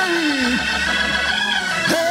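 Hammond-style church organ holding sustained chords, with a strong pitch sliding down over the first half-second and a quick upward swoop near the end.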